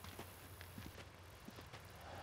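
Near silence: a few faint, irregular light taps over a low steady hum.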